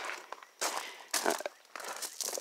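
Footsteps crunching on gravel: three steps at a walking pace.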